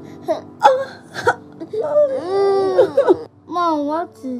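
A woman moaning and wailing in pain: a few short cries, then a long wail that rises and falls, and a wavering cry near the end.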